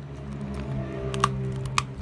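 A small dog chewing a dental chew treat: a few sharp, crisp crunching clicks about a second in and again near the end, over a steady low hum.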